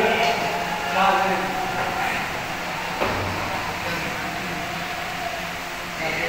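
Indistinct men's voices in the hall, with one sharp click about three seconds in, typical of a snooker ball knocking against another ball or the cushion.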